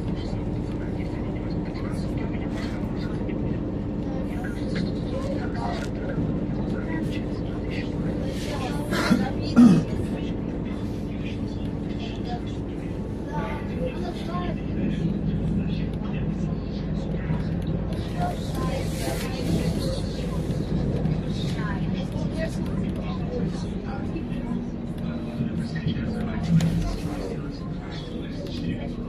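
Inside a MAZ-203 city bus on the move: a steady low hum from the engine and running gear, with faint voices of passengers. There is a short sharp sound about a third of the way in, a brief hiss a little past the middle, and a smaller knock near the end.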